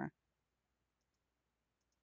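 Near silence with faint computer mouse clicks: two quick pairs, about a second in and again near the end.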